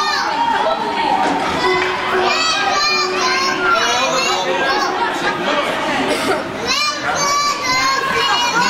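Children's voices shouting and calling out, several at once, echoing in a large indoor ice rink.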